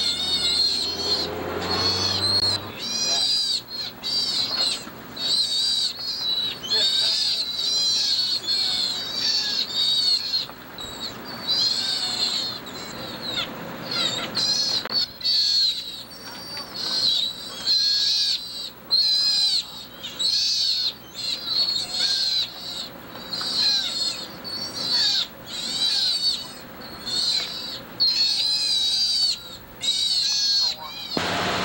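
Caged sea otters giving high, wavering calls over and over, about one a second.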